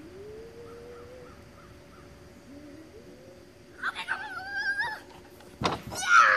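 A wooden dog-agility teeter board banging down once near the end as the dog's weight tips it. About a second before it, a loud, high, wavering call.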